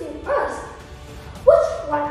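A girl speaking English in two short phrases, the second starting with a sudden loud syllable about one and a half seconds in.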